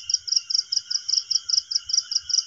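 Crickets chirping at night: one high chirp repeating evenly about five times a second, over a steady lower trill from other insects.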